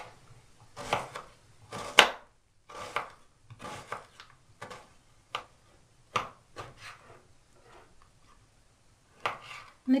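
A kitchen knife cuts an onion and then a slab of pork fat on a wooden cutting board. The blade knocks on the board in separate, uneven strokes, roughly one a second, and the loudest comes about two seconds in.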